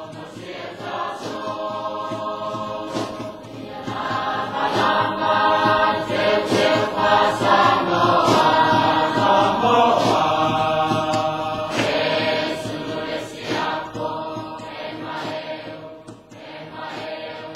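Choir singing in sustained harmony, growing louder about four seconds in and easing off near the end.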